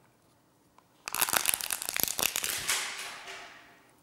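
A white disposable cup crushed and crumpled in a hand: a loud burst of sharp crackling starts about a second in and dies away over about two seconds.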